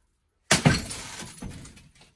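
A sledgehammer strikes a thick, already-cracked glass door pane about half a second in, and the glass shatters with shards cracking and tinkling down, a second sharp break following near the middle before it dies away.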